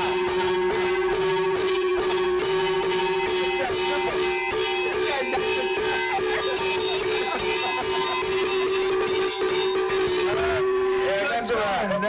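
Handheld cowbells struck on a steady beat along with guitar rock music. The music and strikes stop shortly before the end, giving way to laughter.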